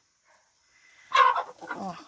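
Near silence at first, then about a second in a chicken gives a loud squawk while the young roosters scuffle in the flock.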